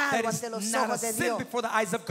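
A woman preaching in fast, emphatic speech.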